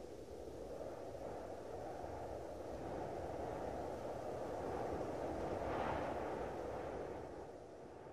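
Cinematic sound-design rumble for a logo reveal: a deep, noisy swell that builds slowly, peaks with a brief brighter rush about six seconds in, then eases off near the end.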